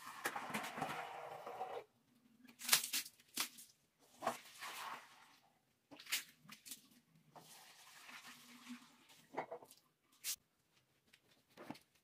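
Floor being mopped with a long-handled floor squeegee and cloth on a tiled floor: stretches of rubbing and swishing, with sharp clicks and knocks between them.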